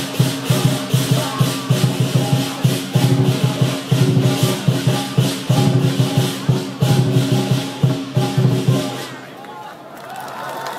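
Lion dance percussion: a big drum, clashing cymbals and a gong beating a fast, driving rhythm, which stops about nine seconds in.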